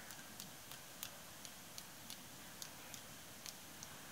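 Faint, light ticks about three times a second from a paintbrush being tapped to flick white paint splashes onto a paper journal page.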